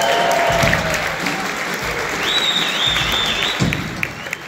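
Theatre audience applauding and cheering, with a high wavering whistle over the clapping in the second half.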